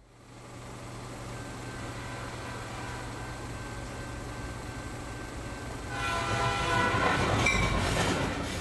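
Train sound effect: the steady low rumble of a train fading in, then a multi-tone train horn sounding louder from about six seconds in.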